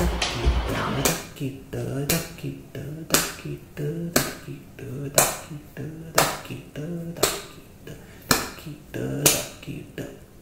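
Finger snaps keeping a steady beat, about one a second, with a low voice sounding between the snaps.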